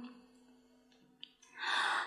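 A woman's held note in a Quan họ song ends right at the start. After a silent pause, an audible intake of breath comes near the end, ready for the next sung phrase.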